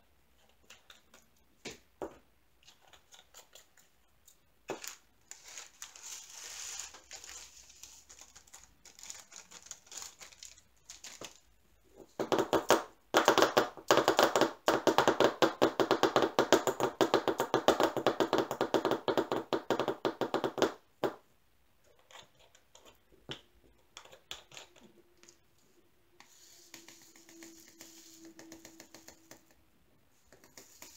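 Resin diamond-painting drills rattling inside a small plastic storage container as it is shaken. A dense, rapid rattle lasts about nine seconds in the middle, with scattered lighter clicks and rustles of drills being handled around it.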